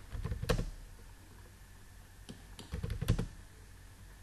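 Computer keyboard keystrokes typing AutoCAD commands: a quick run of clicks at the start, then a pause, then a second run of clicks about three seconds in.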